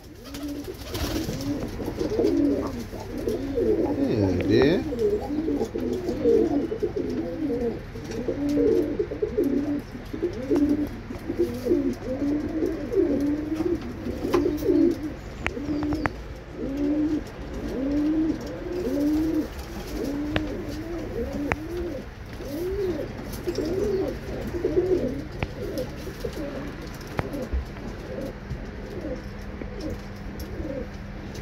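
Birmingham Roller pigeons cooing, one rising-and-falling coo after another at roughly one a second.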